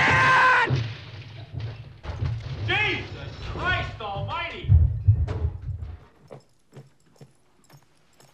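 The tail of a loud crash fading in the first half-second. Then short voices and a run of heavy thuds. From about six seconds in, only faint separate clicks like footsteps.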